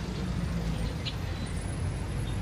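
A minibus engine running as the vehicle drives along a street, a steady low engine sound with road noise.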